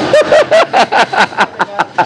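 A person laughing hard, a quick run of about ten short pulses.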